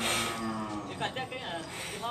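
Cattle mooing: one loud, low moo lasting about a second, dropping slightly in pitch, followed by voices.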